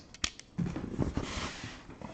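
Cardboard shipping case being handled and turned on a tabletop: a few sharp taps, then about a second of cardboard scraping and rubbing.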